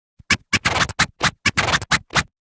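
Short music sting of turntable-style record scratching: a rapid, choppy run of stuttering bursts lasting about two seconds that stops abruptly.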